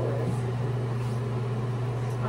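Bathroom exhaust fan running: a steady low hum with an even hiss above it. A short laugh is heard near the start.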